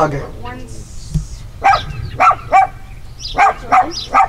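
A small dog barking: a run of about five short, high barks through the second half.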